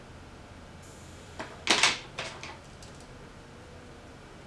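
A few brief clicks and rustles from handling makeup tools near the face, bunched together a little before the middle, over faint room tone.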